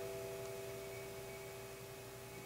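The last held notes of a flute and acoustic guitar duo slowly fading away. A few steady tones ring on and die down into quiet.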